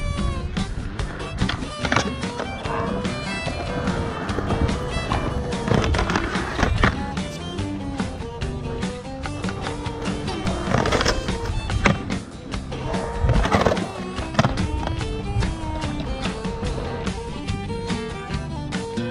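Music playing over skateboard wheels rolling on concrete, with several sharp board impacts and a grind along a ledge edge.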